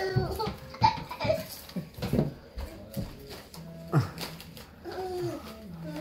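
Children's wordless vocal sounds, babbling and giggling in short bursts, with a few sharp knocks.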